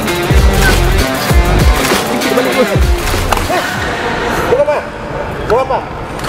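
Background music with a heavy, pulsing beat over the first half. Short, sharp squeaks of court shoes on the sports-hall floor come several times in the second half.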